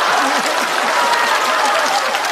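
Studio audience applauding and laughing after a punchline: a dense patter of clapping mixed with laughing voices, easing off slightly.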